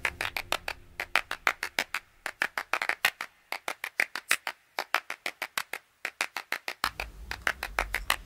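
A group of children clapping hands in a quick rhythmic pattern, about six claps a second, with no singing or instruments. A low hum comes in near the end.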